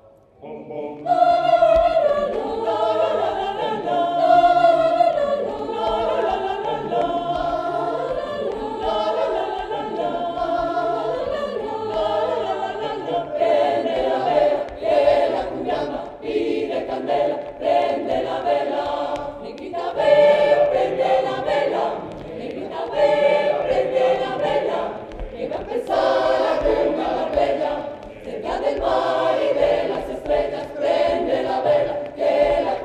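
Mixed-voice choir singing a cappella in several parts, men's and women's voices together. The singing starts about a second in after a brief break and turns more clipped and rhythmic in the second half.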